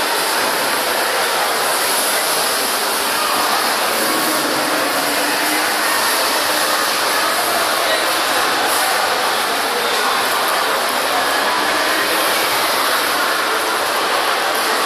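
Steady background din of a busy indoor shopping mall: an even, loud hiss-like wash with no distinct events and faint voices mixed in.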